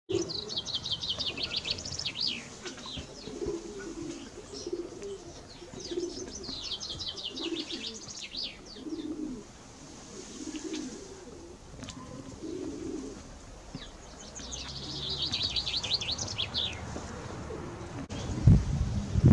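Birdsong: a small songbird sings three quick phrases of rapid falling notes, near the start, in the middle and near the end. Through the middle part a pigeon coos low and repeatedly.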